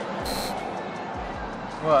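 Busy background noise with music behind it, a short sharp hiss about a quarter of a second in, and a man asking "What?" at the very end.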